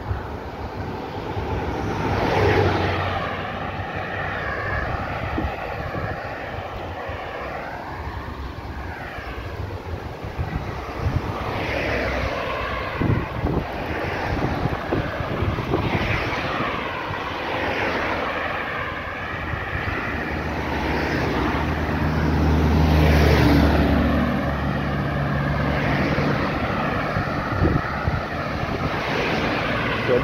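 Road traffic: a string of cars driving past close by, each one swelling and fading as it goes by. A deeper engine rumble runs under the passing cars through the last third.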